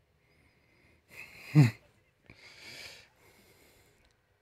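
A person's breathing: a sharp, wheezy breath ending in a short voiced sound that falls in pitch, then a softer breathy exhale about a second later.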